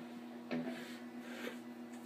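Quiet steady hum from the electric guitar's amplifier, with a softly spoken "yeah" about half a second in.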